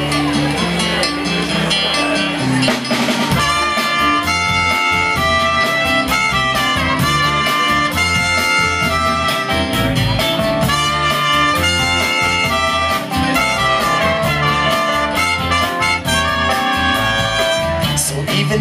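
Live band playing an instrumental intro: guitars and bass at first, then a drum kit comes in about three seconds in and a trumpet takes up a melody over the beat.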